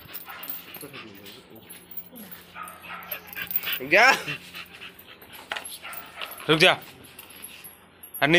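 A dog giving short high-pitched cries, the loudest and sharpest about a second and a half before the end.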